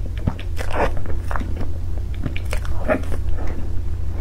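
Close-miked eating sounds of soft cream sponge cake being bitten and chewed: irregular wet smacks and small clicks, with louder squelches just under a second in and again near three seconds.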